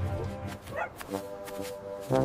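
Light background music with a short cartoon dog bark a little under a second in.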